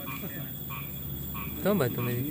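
Frogs calling, a steady run of short repeated croaks, with a man's brief vocal sound near the end.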